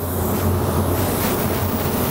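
Compressed air hissing steadily from a paint spray gun, blown over a freshly sprayed metallic white base coat to dry it. A steady low hum runs underneath.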